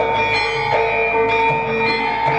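Javanese gamelan playing: bronze metallophones and gongs struck at a steady pulse, their ringing tones overlapping.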